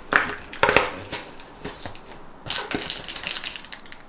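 Cardboard door of an advent calendar being pressed in and torn open along its perforations, crackling and tearing in two bursts, in the first second and again around two and a half seconds in.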